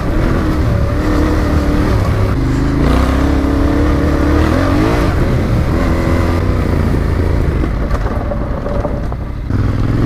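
Yamaha Ténéré adventure motorcycle engine running under way on a gravel track, its revs climbing several times and dropping back as it accelerates and shifts. The sound changes abruptly just before the end.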